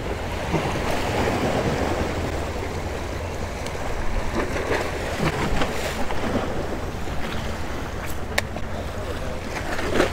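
Small waves splashing and washing against the rocks of a stone jetty, with wind buffeting the microphone in a low, steady rumble. Two sharp clicks come close together near the end.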